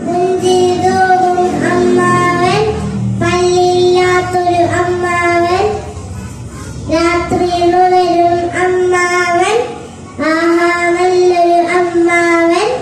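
A young girl singing into a handheld microphone, held notes sung in phrases of about two seconds with short pauses for breath between them.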